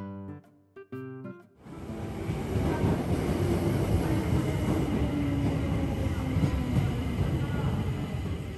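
A short bit of music, then a Tokyo Metro Marunouchi Line train moving along an underground platform: a loud rumble and rush of wheels on rails with a steady motor whine that slowly drops in pitch.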